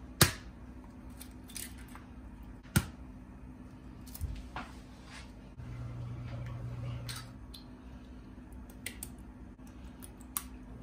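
Eggs tapped sharply against a wooden cutting board and cracked open, a few separate knocks spread out with the loudest near the start, with faint shell and fork sounds between. A low hum runs for about a second and a half in the middle.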